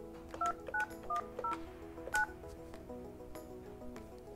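Touch-tone (DTMF) keypad beeps from a Yealink T42S desk phone on speakerphone: five short two-note tones over about two seconds as the voicemail PIN is keyed in.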